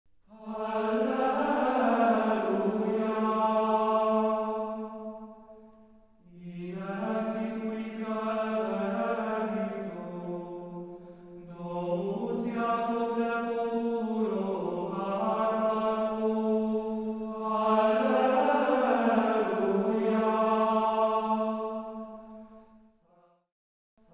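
Unaccompanied sacred chant: a voice singing slow, long held notes in four phrases with short breaks between them.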